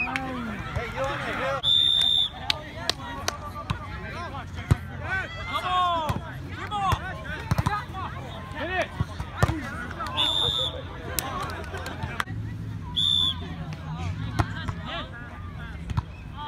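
An outdoor volleyball rally: players' voices calling and chattering, with scattered sharp slaps of hands hitting the ball. Three brief high-pitched tones cut in, near 2 s, 10 s and 13 s.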